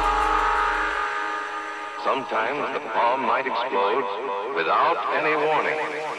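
Breakdown in a drum and bass / jungle mix: the bass and beat drop out about a second in, leaving a held synth pad, and from about two seconds in a spoken voice sample runs over the pad.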